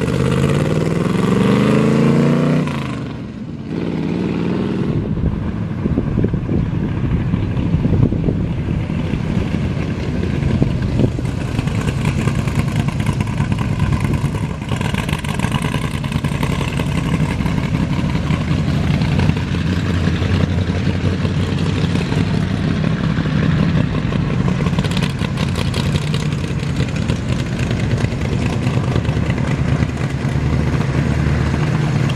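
Ford 351 Windsor V8 in a custom 1946 Chevy pickup, loud, revving up with a rising pitch for the first few seconds, easing off briefly around three seconds in, then pulling steadily with small surges as the truck drives around.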